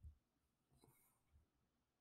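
Near silence: room tone during a pause in speech.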